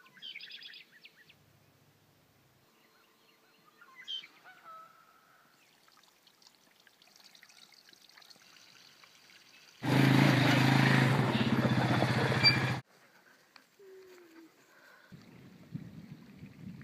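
A few short bird calls, then about three seconds of loud, even rushing noise that starts and stops suddenly.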